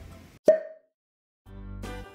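Background music fades out, then a short pitched pop sound effect about half a second in, marking a transition. After a second of silence, new background music starts about a second and a half in.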